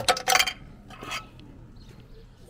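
Souvenir coin machine dispensing a coin: a quick cluster of metallic clinks at the start and one more clink about a second in.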